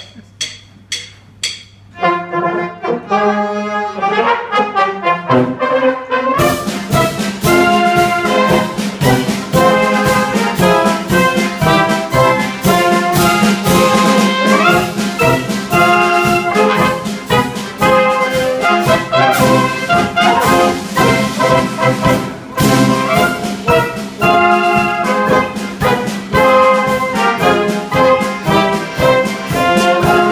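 A Czech brass band (dechovka) of flugelhorns, E-flat and B-flat clarinets, euphoniums, sousaphone and harmonium, with bass drum and cymbals, playing a tune. It opens with four evenly spaced clicks, then a lighter start about two seconds in, and the full band comes in with a steady drum beat about six seconds in.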